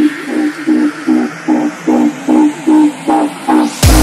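Electronic dance music build-up: a short pitched synth chord repeats about two and a half times a second with the bass filtered out. Near the end the full beat drops in with heavy bass and drums.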